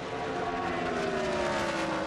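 NASCAR Craftsman Truck Series race trucks' V8 engines running flat out as they go by, a steady engine note that falls slowly in pitch.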